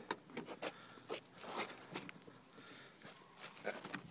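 Handling noises: scattered light clicks and knocks, with rustling of the plastic bags packed in the car.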